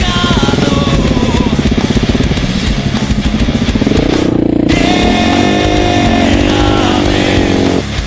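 KTM 690 Enduro R's single-cylinder engine under way, its revs rising and falling, mixed with a rock music soundtrack. Near the end the engine fades and the music takes over.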